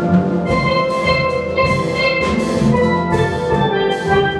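Steel band of tuned steel pans playing together, with struck melody notes ringing over the low bass pans.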